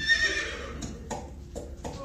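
Horse sound effect: a short whinny at the start, followed by four clip-clop hoof knocks.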